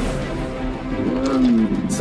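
Film trailer music with an animated dragon's low growl that rises and falls about a second in.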